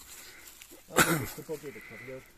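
A sudden loud cry about a second in, falling in pitch and breaking into a quick wavering run of short pulses.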